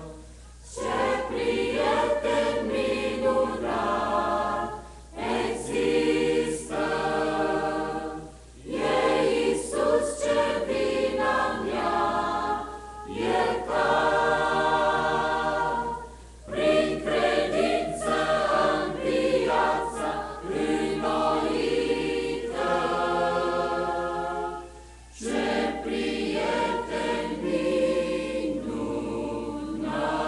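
Mixed choir of men's and women's voices singing in phrases, with brief pauses for breath between them.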